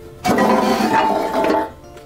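Wood-fired oven door pulled out of the oven mouth, a loud scraping and clinking lasting about a second and a half, over quiet background music.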